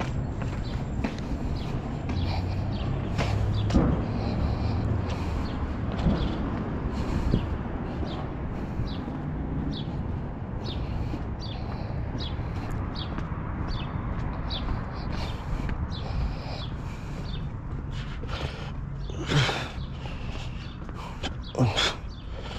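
Footsteps on pavement at a walking pace, about two steps a second, over a steady low rumble, with a couple of louder knocks near the end.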